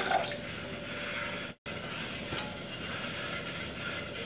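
Water being poured into a steel cooking pot on a lit gas burner, a steady splashing hiss. The sound drops out briefly about one and a half seconds in, then carries on at the same level.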